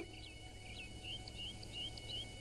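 Faint birds chirping: a quick string of short, high calls over a low steady hum.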